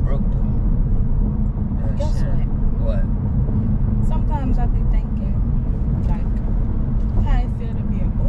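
Steady low road and engine rumble inside a moving car's cabin, with a few short snatches of voice over it.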